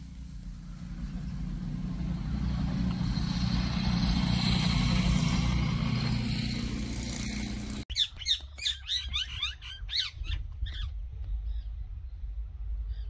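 A motor vehicle passes, its engine and road noise swelling to a peak about halfway and then fading. It breaks off suddenly, and a burst of rapid, high bird chirps follows.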